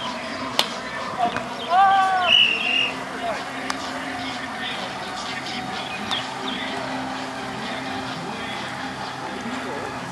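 Outdoor background of players' and onlookers' voices around a beach volleyball court, with a sharp slap about half a second in and a short raised call about two seconds in.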